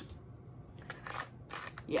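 Plastic parts of a vegetable chopper being handled: a few short clicks and scrapes about a second in, as the green cleaning grid is fitted to the blade frame.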